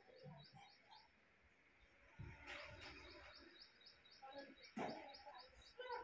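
A bird chirping faintly in the background, a quick run of high chirps at about four or five a second, with a couple of soft bumps.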